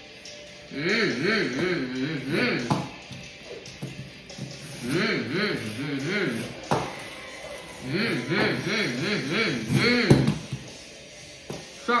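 A boy's voice imitating a monster truck engine revving, in three bursts whose pitch swings up and down a few times a second.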